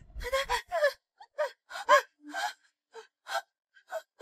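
A woman sobbing in distress: about ten short, gasping, wavering cries in quick succession. A low thump comes in the first half second.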